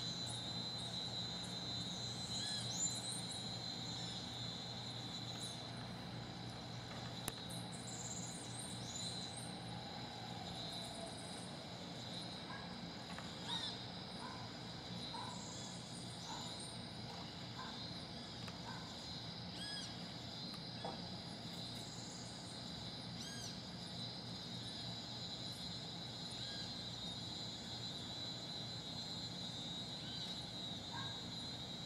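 Outdoor ambience: a steady high-pitched insect trill, with scattered short bird chirps and a low steady hum underneath.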